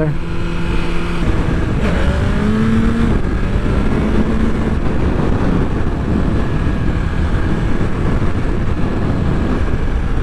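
BMW S1000RR's inline-four engine pulling hard as the throttle opens about two seconds in, its pitch rising under acceleration that lifts the front wheel into a small wheelie. From then on, wind rushing over the microphone covers most of the engine as speed builds.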